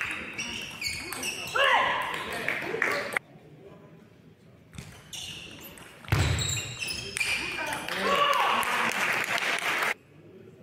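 Celluloid-type table tennis ball clicking off bats and table in a fast rally, followed by loud shouting. Later come a few more ball hits and a low thump, then shouting again.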